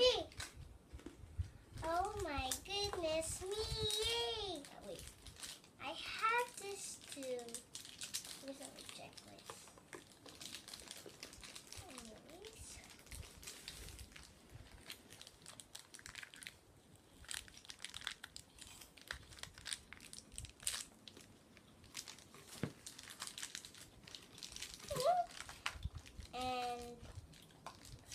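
Plastic toy wrapping crinkling and rustling in a child's hands as she unwraps and fiddles with a small package, with many small clicks and rustles through the middle. A young girl's voice sounds briefly a couple of seconds in and again near the end.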